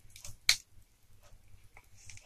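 A cardboard Blu-ray/DVD digibook being handled and opened: faint rustles and one sharp click about half a second in.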